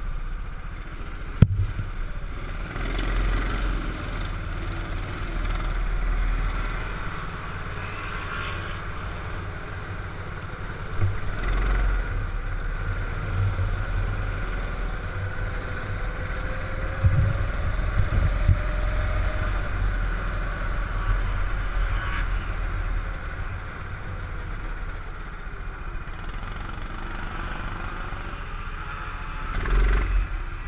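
Go-kart engine running under an onboard camera as the kart laps the track, the sound swelling and dipping with throttle through the corners, with wind noise on the microphone. A sharp click about a second and a half in.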